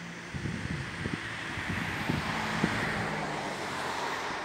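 A car passing by on the road. Its tyre and engine noise swells to a peak about halfway through, then fades.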